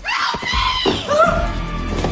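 A woman screaming in terror. It starts suddenly with a high, arching shriek, followed by more cries that bend in pitch, over a low droning horror-film score.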